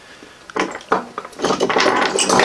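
Metal hand tools clinking and clattering against each other on a workbench: a quiet start, then a run of light knocks and clinks from about half a second in, with some brief metallic ringing near the end.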